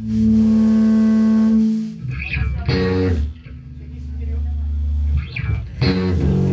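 Live rock band playing loud electric guitar and bass: a chord held for about two seconds, then sharp struck chords about three and six seconds in with a low bass note ringing between them.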